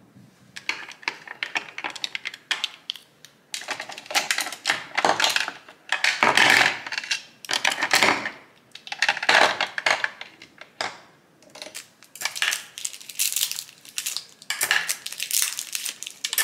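Makeup brushes being pulled from clear acrylic brush cups and organisers, clicking and rattling against the hard plastic. The clatter comes in busy bursts with short pauses between.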